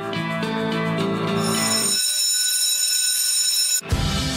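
An alarm bell sound effect rings for about two seconds over the end of light guitar background music. The music drops out as the ringing takes over, the ringing cuts off suddenly near the end, and music with a drum beat starts again right after.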